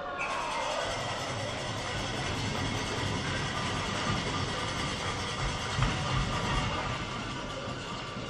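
Steady din of an ice rink just after a goal, with music playing through it.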